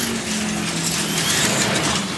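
Slot cars racing on a large multi-lane track: a busy mechanical clatter with the high whine of their small electric motors rising and falling.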